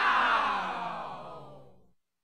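Channel logo sound effect: one long pitched sound that slides down in pitch and fades away over about two seconds, cutting to silence at the end.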